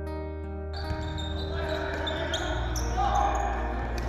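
A held music chord, then from about a second in the sound of a basketball game in a large indoor hall: a ball bouncing and short sharp court noises over general hall noise, with music underneath.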